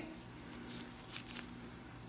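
Faint rustles and a few soft clicks from nitrile-gloved hands handling a soap bar and a silicone soap mold, over a faint steady hum.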